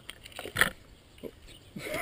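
A light click about half a second in, then a man's quiet, startled 'oh' as he reacts.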